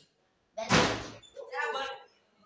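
A room door slamming shut about half a second in, followed by a short voice.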